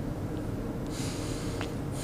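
A woman sniffling and drawing a breath through her nose as she cries, the sniff starting about a second in. A steady low hum runs underneath.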